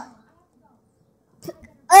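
Mostly quiet, then near the end a girl's short, loud voiced 'uh', a grunt of disgust at a nasty-tasting candy in her mouth.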